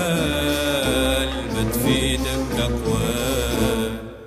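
Passage without sung lyrics from a 1977 Arabic-language song: a held, wavering melody line over a steady accompaniment.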